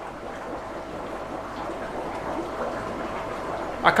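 Steady hiss with a faint hum from a fish room's running equipment, such as its air pump and water flow, with no distinct events.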